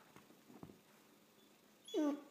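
Dog giving one short whine that falls sharply in pitch near the end, the crying of a dog begging to be let up on the chair; before it, a faint soft knock.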